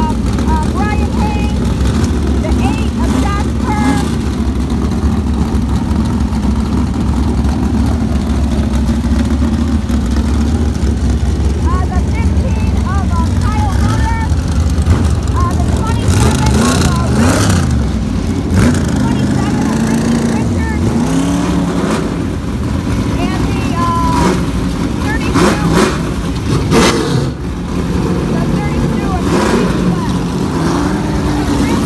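Several supermodified race car engines running, a loud steady low rumble, with revs rising and falling in the second half. Voices can be heard over the engines.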